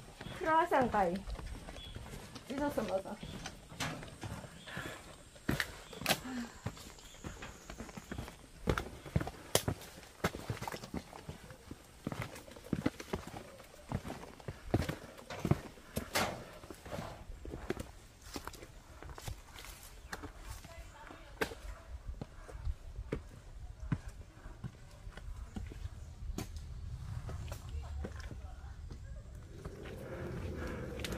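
Hikers' footsteps on metal stair treads and rock, a run of sharp, irregular clacks, with a short voice in the first seconds.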